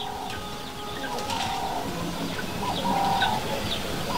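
Outdoor bird calls: held cooing notes, like a dove's, and short high chirps from small birds, over a low background hiss.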